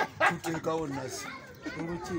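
Children's voices talking and calling out, with a loud cry just after the start.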